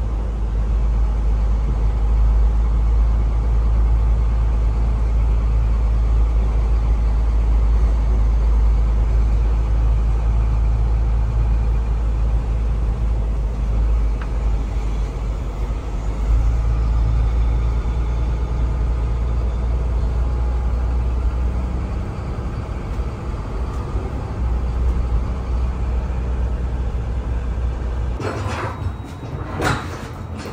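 In-cab running noise of a diesel box truck driving slowly: a steady low engine rumble whose note shifts a little partway through. Near the end it gives way to a run of sharp knocks and clanks.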